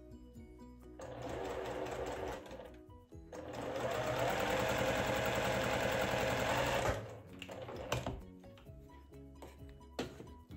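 Electric sewing machine stitching a seam corner to corner across fabric pieces, in two runs: a short burst of about a second and a half, then a longer steady run of about three and a half seconds. A few sharp clicks follow near the end.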